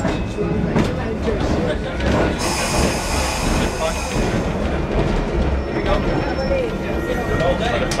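Electric streetcar running along its track, heard from inside the car: a steady low rumble with clicks and rattles, and a high metallic squeal from about two and a half to four seconds in.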